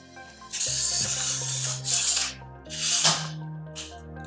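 Telescoping leg sections of a Peak Design Travel Tripod being slid shut by hand. Three long sliding rubs, the last one falling in pitch, then a short one near the end, over background music.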